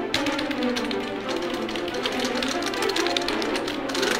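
Sampled spiccato strings in a dense, rapid flurry of short notes, triggered by hammering on a small Korg portable MIDI keyboard.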